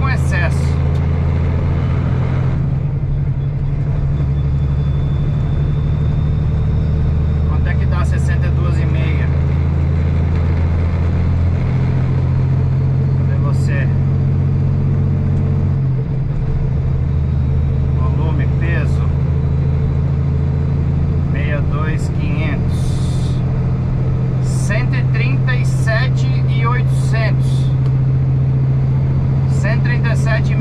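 Heavily loaded semi-truck's diesel engine running under load, heard inside the cab as a steady low drone. The engine note changes about halfway through, around twelve and sixteen seconds.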